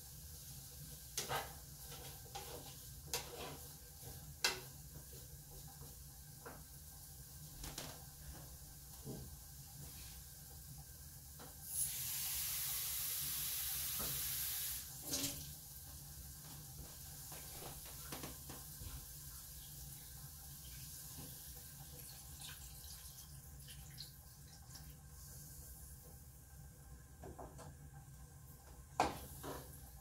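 Kitchen sink tap running for about three seconds near the middle, drawing water to add to the pan. Around it, scattered light clicks and scrapes of a spatula in a frying pan over a low steady hum.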